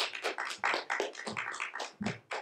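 Audience applauding, a quick irregular patter of many hand claps.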